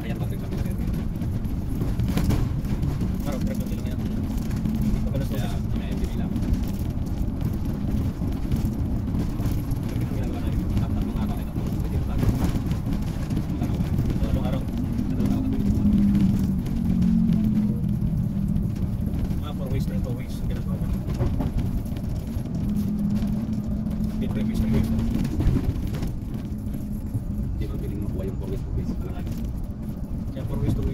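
Steady low rumble of a moving bus, its engine and road noise heard from inside the cabin.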